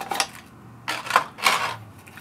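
Unboxing handling noise: a cardboard box and its contents being handled, making three short clicks and rustles.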